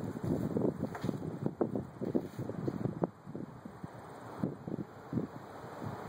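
Wind buffeting the microphone in irregular gusts, heaviest in the first half and easing off after about three seconds.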